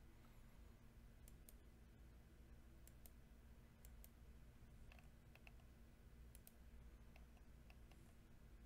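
Near silence: a faint low hum of room tone, with a dozen or so faint, sharp clicks scattered unevenly through it.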